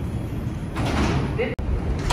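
New York City Subway 4 train standing at a platform with its doors open, over a steady low rumble; a rushing noise swells about three-quarters of a second in, and the sound drops out abruptly for an instant just past halfway.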